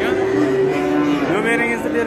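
Cattle mooing: one long, level call lasting over a second, rising in pitch near its end.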